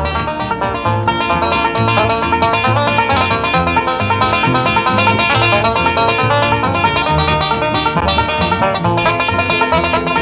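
Live bluegrass band playing at a bright tempo: a five-string banjo picked in rapid three-finger rolls leads over strummed acoustic guitar and a steady upright-bass pulse.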